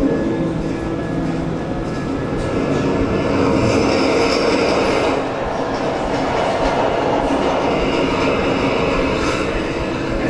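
Animated film soundtrack playing loudly over a venue's speakers: a dense, steady rumble of action sound effects, with music faint underneath.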